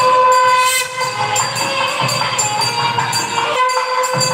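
Nadaswaram, the South Indian double-reed temple pipe, playing a melody of long held, stepping notes with a loud, reedy, horn-like tone.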